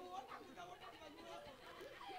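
Faint, indistinct voices talking, with no clear words.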